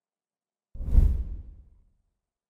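A whoosh transition sound effect with a deep low rumble, starting suddenly about three-quarters of a second in and fading out over about a second.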